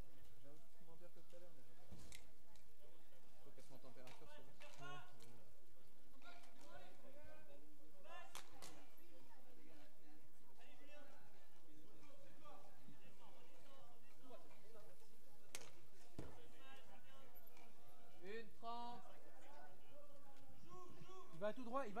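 Bike polo play on an outdoor hardcourt: scattered distant voices of players and spectators, with a few sharp knocks from the game, about 2, 8, 15 and 16 seconds in.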